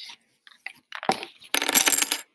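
Small plastic counting discs clicking and clattering against a plastic ten-frame tray and each other as they are handled: a few scattered clicks and a knock, then a dense rattle in the last half second.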